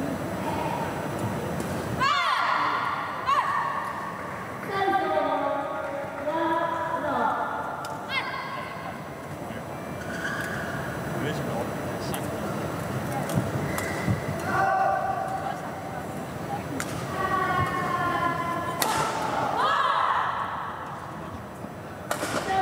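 Voices calling out and talking in a badminton hall, with a few sharp knocks in the second half.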